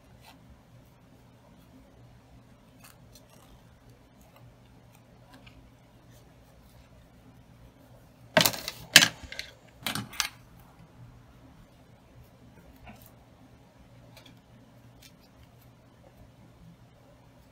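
Scissors and hands working a corduroy velvet ribbon bow, with faint snips and handling clicks. About eight seconds in comes a loud clatter of four or five sharp metallic knocks lasting about two seconds.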